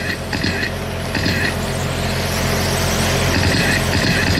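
Electric brushless-motor radio-controlled sprint cars racing around a small oval, their motors whining in short bursts as they pass, then a rising hiss of cars running close, over a steady low hum.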